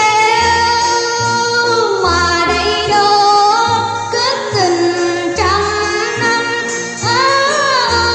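A woman singing a gliding, ornamented Vietnamese melody over an instrumental ensemble with a repeating low bass note: a sung number from a cải lương play.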